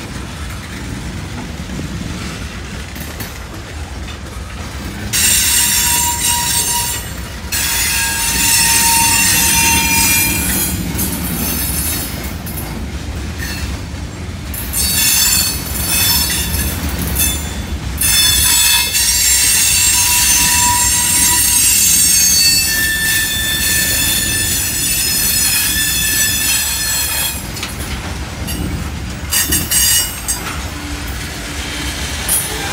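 Freight train of tank cars and hopper cars rolling past, wheels rumbling steadily on the rails. Loud, high-pitched wheel squeal starts about five seconds in and returns in long stretches for most of the rest.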